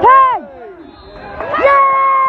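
A young fan's excited, high-pitched shouting: a short loud yell at the start, then a long shout held on one note from about a second and a half in, as a foul in the box earns a penalty.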